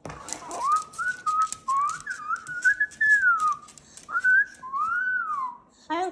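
Whistling: a string of rising and falling gliding notes, with faint sharp clicks scattered over it.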